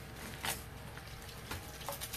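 Eggs frying in oil on a gas flat-top griddle, a steady sizzle, with a brief click about half a second in.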